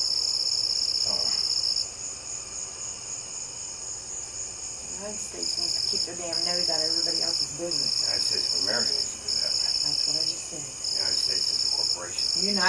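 Night insects trilling: a high, steady chirring that runs in long stretches of a second or two with short breaks, quieter for a few seconds early on. Faint low voices talk under it in the middle.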